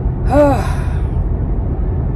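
A woman sighs once, a short voiced breath that rises and falls in pitch about half a second in. Under it runs the steady low rumble of a moving car's cabin.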